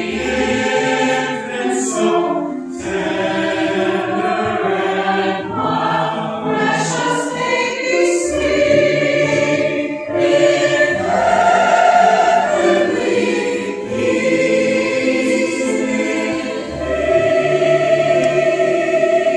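Mixed choir of men's and women's voices singing a Christmas choral arrangement, with sustained sung notes throughout.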